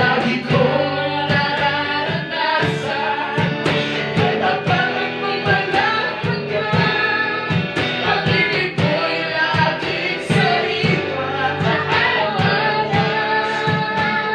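Tagalog praise-and-worship song performed live: a woman and a man singing together into microphones over electric guitar and band accompaniment with a steady beat.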